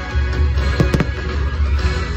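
Fireworks show music playing loudly, with fireworks going off over it: a few sharp bangs close together just under a second in.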